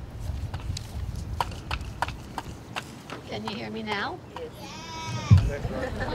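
Wind rumbling on an outdoor microphone, with scattered clicks and rustles as papers are handled. From about three and a half seconds in there are two short wavering vocal sounds, and a single low thump comes near the end.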